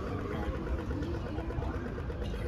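A heavy vehicle's engine idling steadily with low street-traffic rumble, and a whine that falls in pitch and fades about half a second in.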